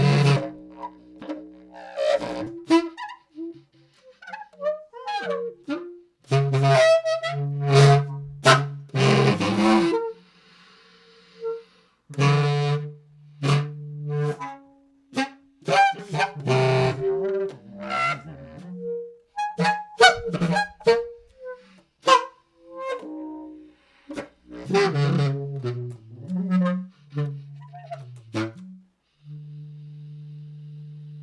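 Solo bass clarinet playing in extended techniques: short detached bursts and notes bright with buzzy high overtones, split by silences, with a stretch of pitchless breath noise about ten seconds in and a low held tone starting near the end. The sounds come from changing how much mouthpiece is in the embouchure, biting the reed and singing into the instrument.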